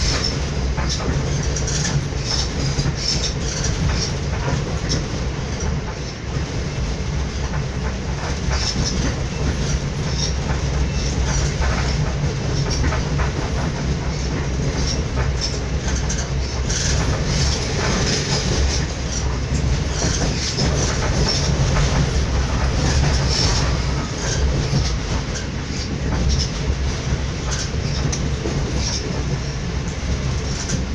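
Passenger train running on the rails, heard from inside the carriage: a steady low rumble of wheels and running gear, with scattered irregular clicks from the track.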